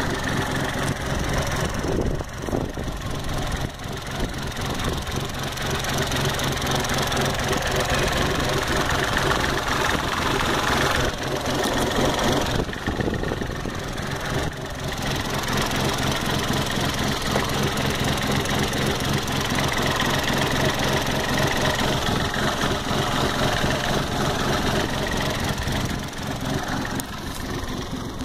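Vauxhall Corsa C's Z10XE 1.0-litre three-cylinder Ecotec petrol engine idling steadily.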